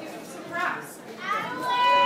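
Voices in a large hall: scattered audience chatter, then one voice holding a single long, high call or note near the end.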